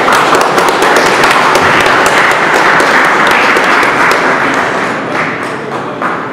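Audience applauding: dense, steady clapping that begins at once, holds for about five seconds and then fades.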